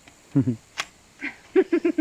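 People laughing in short bursts, with one sharp click a little under a second in from the shock-corded aluminium poles of a folding camp chair frame being handled.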